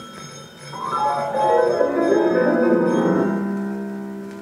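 Orchestral passage from an opera, played from a 1947 Columbia 78 rpm record: quiet at first, then about a second in a run of rising notes swells into a held chord that slowly fades.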